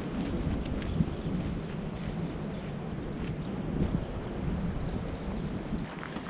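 Wind buffeting the microphone in a steady rumble, with faint crunching footsteps on a gravel path.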